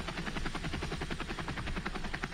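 Helicopter rotor chopping with a fast, even beat that holds steady throughout.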